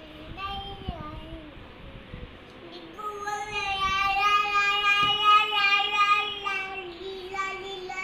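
A young child's high voice singing out wordlessly: a few short sung sounds, then one long note held for about four seconds that dips a little in pitch near the end.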